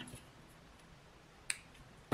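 Quiet room tone broken by one short, sharp click about one and a half seconds in.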